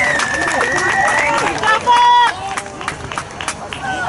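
A long, steady whistle blast for about the first second, likely a referee's whistle on a rugby pitch, over sideline chatter. A short, louder pitched call follows about halfway through.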